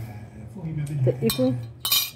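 Tableware clinking: a light clink about a second in and a louder, ringing clink near the end, with a few words spoken.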